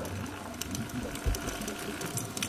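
Underwater sound picked up through a camera housing: a steady low hum with a dense scatter of sharp clicks, and one dull thump about a second and a quarter in.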